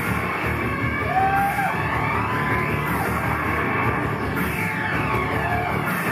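Live band music with keyboards and drums, dense and steady, with a few long held melodic notes over it about a second in, around the middle, and near the end.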